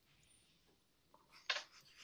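Quiet room tone, then a short, sharp noise about a second and a half in.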